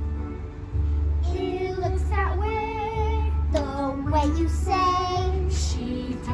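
A song with a steady low beat and a young girl's voice singing the melody.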